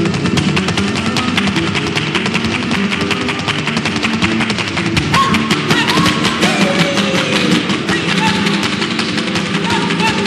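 Vintage flamenco recording of a colombiana flamenca: flamenco guitar played under dense, rapid percussive strikes that run without pause, with a few short gliding voice-like calls about halfway through.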